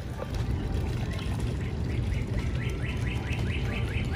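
A songbird singing a rapid run of short repeated chirps, about five a second, starting about a second in, over a steady low rumble.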